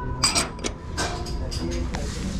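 Milk glass cups clinking as one is set back onto a stack of matching cups: a quick cluster of sharp clinks about a quarter second in, then single clinks just after half a second and at about one second.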